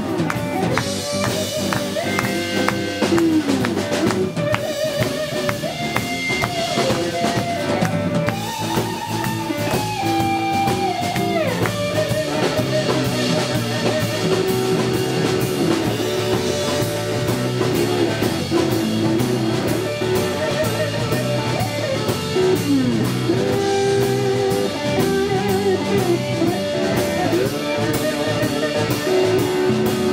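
Live blues band playing an instrumental break: a lead electric guitar plays held, gliding notes over drums, bass guitar and a second electric guitar.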